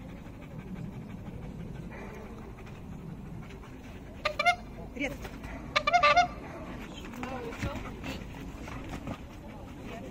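A Belgian Malinois giving short, high-pitched yelping barks in two loud bursts, about four and six seconds in.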